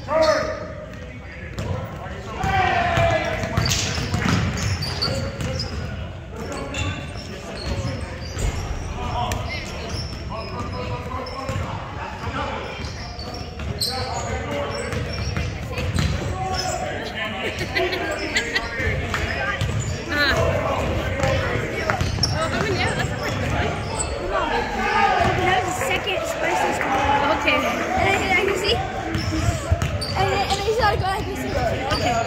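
Basketball game on a hardwood gym court: the ball bouncing repeatedly as it is dribbled, with players' voices calling out, all echoing in a large gym.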